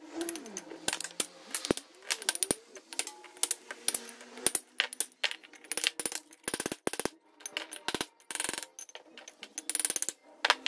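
Irregular sharp clinks and knocks of a steel flat chisel on green stone as grinder-scored segments are broken out of a carved sink bowl, with broken stone pieces clattering in quick clusters.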